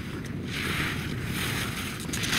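Skis hissing and scraping over firm snow as a skier slides up close, the hiss swelling from about half a second in, over a low rumble of wind on the microphone.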